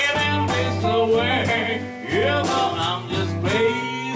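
Live electric blues band playing: two electric guitars and drums behind an amplified blues harmonica played into a handheld microphone, with bending held notes over a steady beat.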